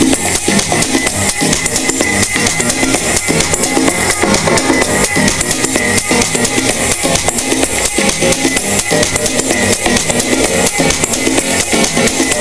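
Dance music from a DJ set played loud over a club sound system, with a steady, evenly repeating kick-drum beat.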